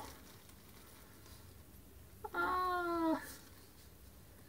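A single drawn-out vocal note held at a steady pitch for under a second, dipping slightly at its end, about halfway through; otherwise quiet.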